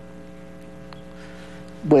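Steady electrical mains hum on the broadcast audio line, a buzz of several evenly spaced pitches, with a faint tick about a second in. A man's voice starts just before the end.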